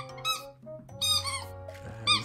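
A dog's squeaky toy squeaking as a Chihuahua puppy bites it: quick, high squeaks in two bursts, one at the start and one about a second in.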